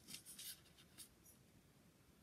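Faint rustling of a paper match programme being handled, a few soft rustles in the first second, then near silence.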